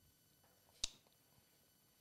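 Near silence: room tone, broken by a single short, sharp click a little under a second in.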